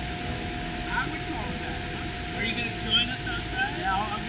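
Steady hum of brewery canning-line machinery, with a constant high tone running through it.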